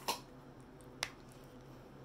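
A dog gnawing a bone in the background: two sharp cracks about a second apart, the first the louder, over a faint steady hum.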